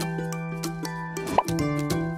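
Short, bright intro jingle with held notes, with a single quick rising cartoon pop about one and a half seconds in, as items pop into an animated shopping basket.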